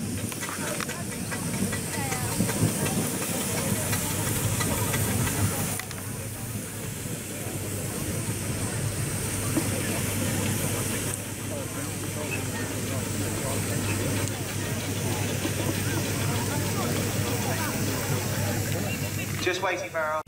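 Steam hissing from a lineup of steam traction engines, over a steady low rumble and the chatter of people nearby. The sound changes abruptly twice along the way.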